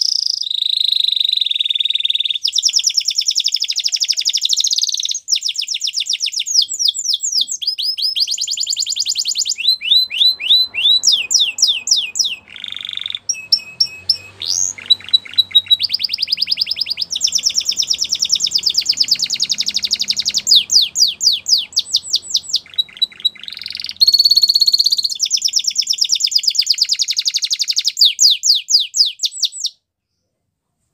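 Domestic canary singing a long song of rapid trills: phrase after phrase of fast repeated notes, some sliding up or down in pitch, with brief breaks between phrases. The song stops just before the end.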